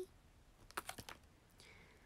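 Near silence with a quick cluster of three or four faint clicks or taps about a second in, and a soft hiss near the end.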